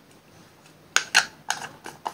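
Small cosmetic containers being handled: about five light clicks and taps in the second half, like a lip scrub jar being closed and set down.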